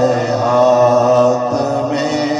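A male reciter singing an Urdu devotional song through a microphone, holding one long note that shifts pitch about one and a half seconds in.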